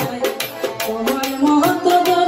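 Bengali baul folk music played live: a harmonium melody over a hand drum and rattling percussion keeping a quick, steady beat, with the melody stepping up in pitch about one and a half seconds in.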